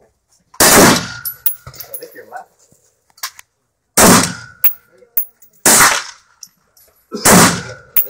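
Four gunshots, each followed by a short ring-out. The first comes about half a second in, and the other three follow at roughly one-and-a-half-second intervals, fired slowly and deliberately one at a time.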